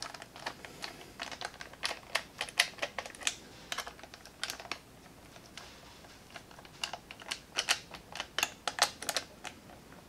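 Irregular light clicks and ticks of a hand screwdriver tightening the rail screws on a plastic Nerf blaster. They come in two spells with a quieter pause in the middle.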